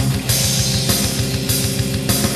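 Instrumental passage of a heavy metal song: distorted electric guitars and bass over a rapid, steady kick-drum beat and crashing cymbals, with no vocals.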